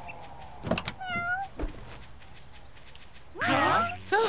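A cat meowing: a short meow about a second in and a louder, longer one near the end, with a brief knock just before the first.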